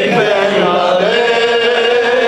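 A man's voice chanting a mourning lament (rouwzang) into a microphone, holding one long, slightly wavering note.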